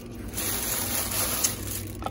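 Thin plastic shopping bag rustling and crinkling as it is handled.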